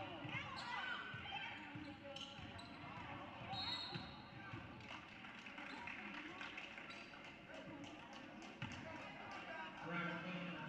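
Basketball being bounced on a hardwood gym floor, with voices of players and spectators echoing in the gym and a short referee's whistle about four seconds in.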